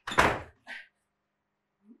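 Wooden interior door pushed shut with one loud thud, followed by a shorter, fainter knock just after.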